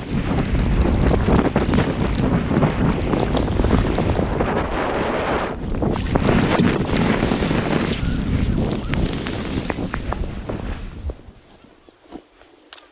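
Wind buffeting the action camera's microphone as the skier heads downhill, a loud rushing rumble that dies away about eleven seconds in.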